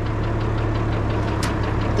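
International 1256 tractor's six-cylinder turbodiesel idling with a steady low hum, and a single sharp click about one and a half seconds in.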